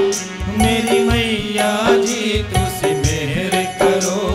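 A live devotional bhajan: a male voice holds a long, wavering sung note over sustained instrumental accompaniment and a regular hand-drum beat.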